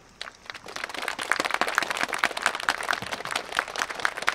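Audience applauding, the clapping building up about half a second in and running on as a dense, even patter of many hands.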